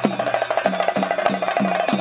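Rapid Theyyam ritual drumming, even strokes at about five a second, each dropping slightly in pitch, over a steady high metallic ringing.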